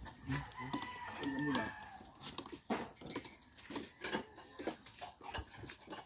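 A rooster crowing in the background during the first two seconds, then scattered sharp clinks of a serving spoon and tongs against a metal wok and plates.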